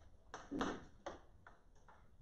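A few light clinks and taps, five over two seconds, the first two the loudest, from small objects being handled and set down on an altar.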